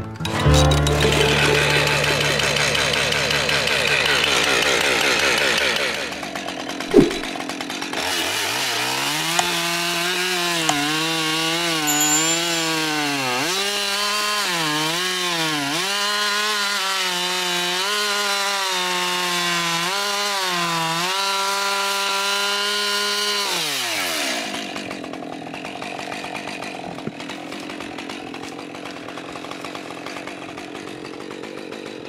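Husqvarna 550 XP Mark II two-stroke chainsaw cutting a flush butt on an ash log. From about 8 s it runs at high revs, the pitch dipping and recovering as the chain bites into the wood. Near 24 s the throttle is released and the revs fall away.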